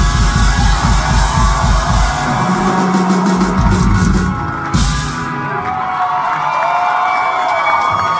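Live rock band with electric guitar, drums and keyboard playing the last bars of a song, which ends on a final hit about halfway through. Then held ringing notes while the crowd cheers and whoops.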